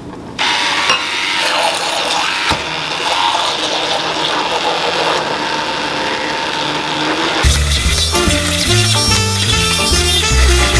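Handheld immersion blender running in a glass bowl of mashed potatoes, smoothing the mash. It starts suddenly just under half a second in, with one sharp knock a couple of seconds later. Near the end background music with a heavy beat takes over.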